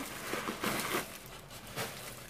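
Zipper on a leather handbag being pulled open: a short rasp about half a second in, with rustling and small knocks as the bag is handled.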